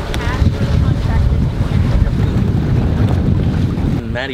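Wind buffeting the camera microphone: a loud, uneven low rumble with a fainter hiss over it.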